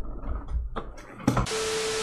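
TV static transition sound effect: a loud, even white-noise hiss with a single steady test tone running through it. It cuts in about one and a half seconds in, after a quiet stretch of low rumble.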